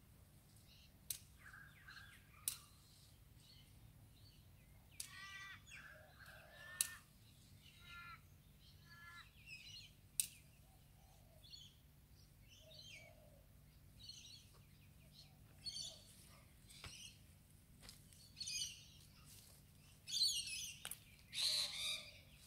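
Small birds chirping and calling on and off, with a few sharp clicks. Near the end there is louder rustling of leafy stems as plants are picked and gathered.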